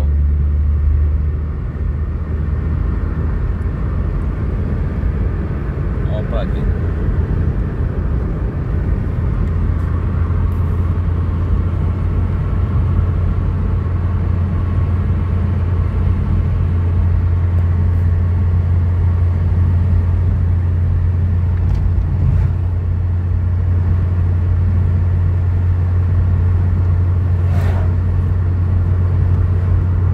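Car engine and tyre road noise droning steadily inside the moving car's cabin, a low hum whose note shifts once near the start.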